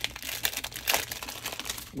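Clear plastic cellophane sleeve crinkling as a roll of washi tape is handled inside it: a run of quick, irregular crackles.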